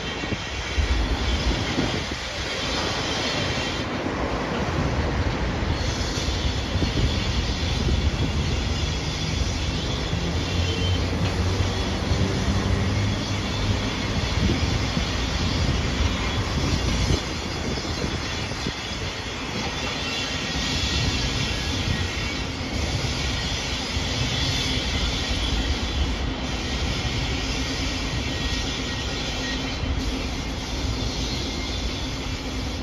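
Slow-moving locomotive set pushed by a ChME3T diesel shunter: heavy steel wheels rumbling and clacking over rail joints and points, with a faint high wheel squeal coming and going, over the low running of the diesel engine.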